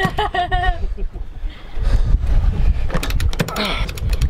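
A sailboat's winch cranked by hand with a winch handle to hoist the mainsail, its pawls clicking in quick runs, loudest late on, over wind rumbling on the microphone. A man laughs at the start.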